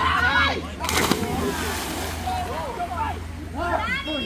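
A person jumping into a river swimming hole, with one short splash about a second in, among several people's voices calling out.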